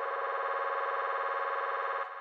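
A single buzzy synthesizer chord held steady in a phonk trap beat, with no drums under it, cutting off suddenly at the end.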